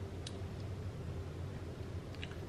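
Quiet room tone with a steady low hum and one faint click about a quarter second in.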